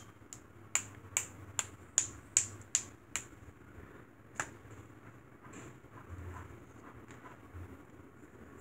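A paintbrush tapped against the handle of a second brush to flick spatters of paint onto a page: a run of sharp clicks, about two or three a second, that stops after about three seconds, with one last tap a second later. Faint handling sounds follow.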